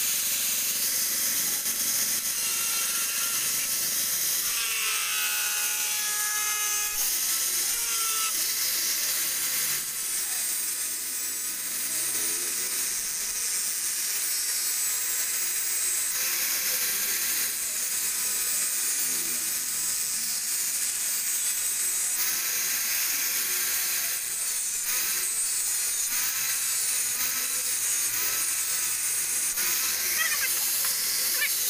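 Electric angle grinder with a cutting disc running continuously, cutting into the steel of an old ceramic tile cutter. A few times the motor's pitch dips and recovers as the disc bites.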